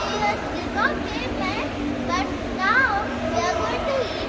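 Children's voices talking and exclaiming, with pitch rising and falling, over a steady low hum.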